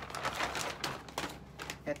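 Plastic shopping bag rustling and a cardboard laptop box being handled, a dense run of light crackles and knocks for about the first second, then sparser knocks.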